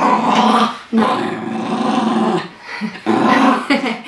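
Small dog growling in three rough stretches, the middle one the longest.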